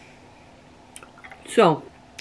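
A person's short voiced sound, falling steeply in pitch, about one and a half seconds in; it is the loudest thing here. Before it come a few faint clicks of a metal spoon in a cereal bowl.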